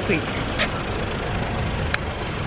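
Steady low rumble of urban street and traffic noise, with a couple of brief clicks.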